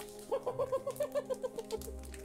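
A quick run of about a dozen short, bouncing pitched notes over a soft sustained background, from the soundtrack of a TV drama's light romantic scene.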